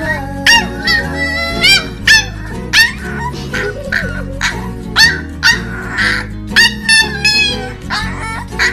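Corgi puppy giving a string of short, high-pitched yips, about one or two a second, each sweeping upward, over a background music track.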